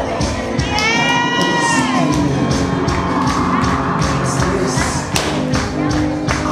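Dance music with a steady drumbeat, over a crowd cheering. About a second in, a long high-pitched shout rises and falls.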